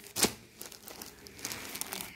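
Plastic packaging crinkling and rustling as packed sarees are handled and swapped, with a sharp click just after the start.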